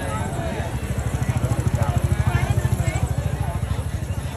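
A small engine running close by with a rapid low throb that grows louder toward the middle and then eases off, with people's voices chattering over it.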